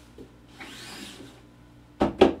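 A squeegee drawn across a raised screen-printing screen, flooding ink over the mesh: one soft scraping rub lasting about a second, preceded by a small click.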